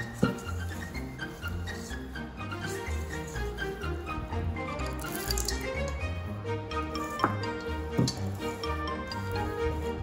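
Background instrumental music with a repeating bass line and melodic notes, with a few short knocks over it near the start and late on.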